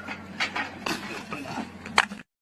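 Person dropping from an excavator bucket and landing on sandy ground: a sharp thud near the end, after a few lighter knocks and faint voices.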